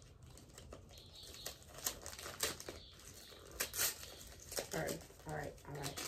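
Crinkling and rustling of gift packaging being handled and opened, in scattered short crackles. A low murmuring voice comes in near the end.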